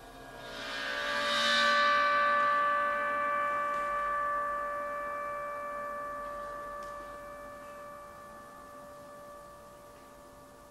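A large gong swelling up over about a second and a half, its bright upper overtones blooming, then ringing on with several steady tones and slowly fading away.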